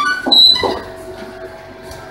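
A short, loud, high-pitched squeak in the first half second, then quieter room background.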